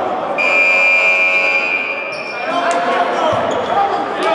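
Basketball scoreboard buzzer sounding one steady electronic tone for about a second and a half in a large gym, over players' voices.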